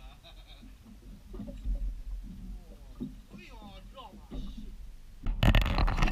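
Faint voices talking over a steady low rumble. About five seconds in, the sound jumps to a much louder rush with sharp knocks and shouting.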